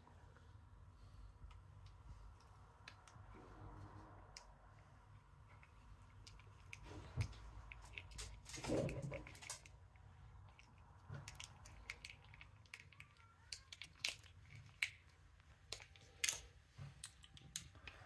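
A quiet room with scattered faint clicks and small knocks, the louder ones about seven, nine and sixteen seconds in.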